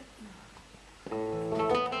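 Acoustic guitar starts playing about a second in: a ringing chord, then further notes, opening a song.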